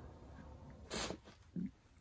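A sleeping pet snoring and snorting softly: one short snort about a second in and a fainter, lower one just after.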